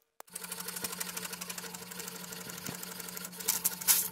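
HP inkjet printer printing a page: a steady mechanical whirr with fast, even ticking from the moving print head, louder near the end.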